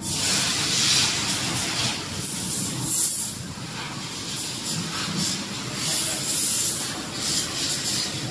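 A steady hiss with irregular louder surges of high hiss.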